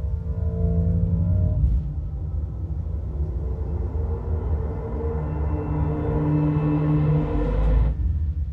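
Dolby Cinema trailer soundtrack playing through a Sonos Arc soundbar and subwoofer: a slow, dark ambient drone of held low tones over deep bass, swelling into a heavy bass surge near the end.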